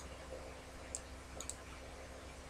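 A few faint, sharp computer mouse clicks, one near the start, one about a second in and a quick pair shortly after, over a faint steady low hum.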